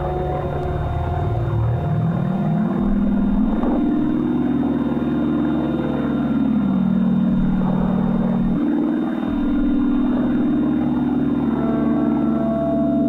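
Experimental electroacoustic drone music: a low, beating drone slides up in pitch over the first few seconds, dips about six and a half seconds in and steps back up near nine seconds, with thinner held tones above it.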